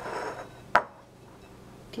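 A soft breath close to the microphone, then a single sharp click about three-quarters of a second in.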